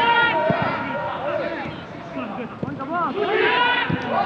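Football players shouting and calling to one another on the pitch, several voices overlapping, with a few sharp thuds from the ball being kicked.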